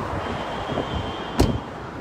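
Steady street traffic noise, with one sharp knock a little past halfway through and a faint high tone until just after it.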